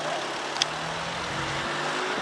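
Steady town-street traffic noise with a low engine hum from road vehicles, and one short click about half a second in.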